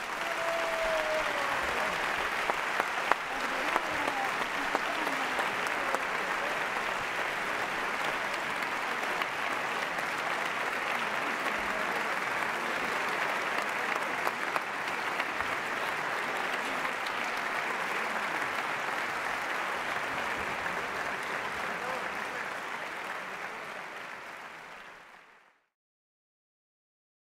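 A large audience applauding steadily, which fades away near the end.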